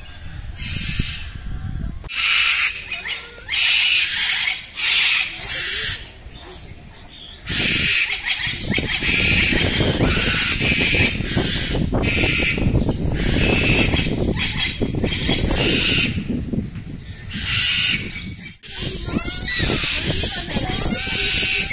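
Parrots squawking: loud, harsh calls in short bursts, about one a second, over a steady low rumble.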